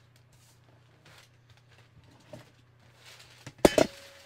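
Drafting rulers and pattern paper handled on a cutting table: faint rustling and light knocks, then a sharp clatter near the end as a long curved ruler is set down, with a brief ringing tone after it.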